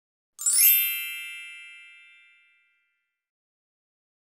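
Chime sound effect for a logo animation: a quick rising shimmer about half a second in, then a bright ringing tone that fades out over about two seconds.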